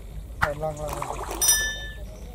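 A short voice sound after a sharp click about half a second in, then a subscribe-button sound effect, a click followed by a bell-like ding that rings steadily on to the end.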